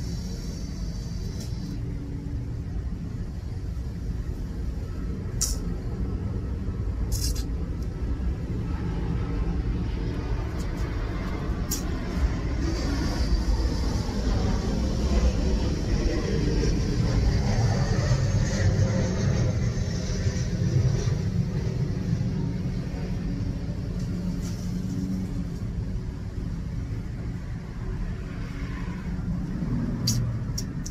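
Steady low outdoor rumble, louder through the middle, with a few short clicks. A box-mod vape is being drawn on, with a faint airy hiss near the start and again in the middle.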